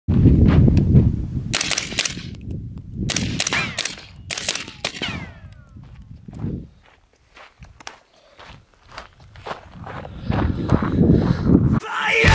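FN15 rifle chambered in 300 Blackout firing strings of rapid shots, three quick groups in the first five seconds, each shot sharp with a short ringing tail.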